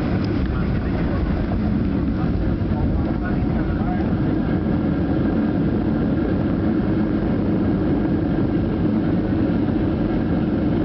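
Cabin noise of a WestJet Boeing 737 during its landing roll: a steady, loud roar from the jet engines and the wheels on a wet runway.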